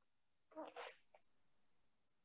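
Near silence, broken about half a second in by one faint, short call from a domestic animal.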